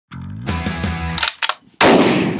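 Short opening music sting with sustained pitched tones and a few sharp hits, ending in one loud, sudden shot-like crack with a ringing tail near the end.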